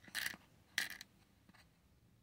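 Plastic press-on nails clicking and rattling against a clear plastic organizer compartment as they are picked out by hand: two short clattery sounds within the first second, then a faint tick about a second and a half in.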